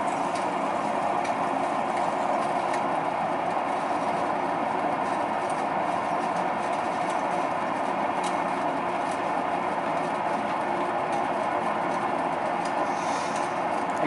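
Electric potter's wheel running steadily at speed as a wet clay cylinder is thrown on it, an even machine noise with a faint steady hum.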